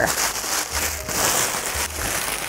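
Tissue paper rustling and crinkling continuously as a small wrapped gift is unwrapped by hand.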